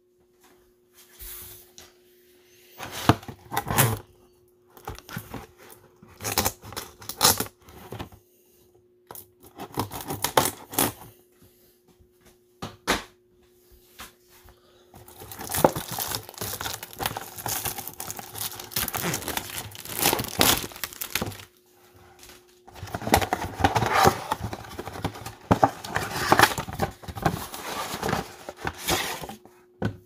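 Plastic shrink-wrap being torn and crinkled off a cardboard trading-card box: scattered short rustles and tears at first, then two long stretches of continuous crinkling in the second half.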